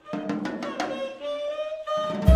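Jazz trio music starting again after a pause: a few sharp drum-kit strikes, then a horn comes in with held notes about a second in.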